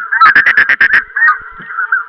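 A flock of geese honking and calling all together, with a quick run of loud, sharp honks in the first second and the chatter thinning after that.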